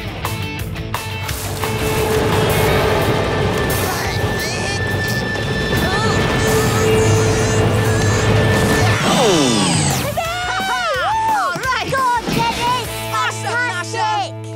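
Cartoon soundtrack: music under dense, noisy crashing and rumbling effects for about nine seconds, then a falling glide and a run of wavering, rising-and-falling glides, ending on sustained music chords.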